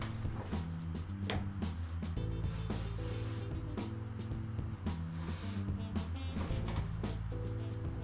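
Recorded music with a bass line and guitar playing through a DIY synth amp module and a pair of small speakers, working normally again.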